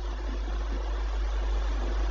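Steady background noise: an even hiss over a strong, constant low hum, with no speech.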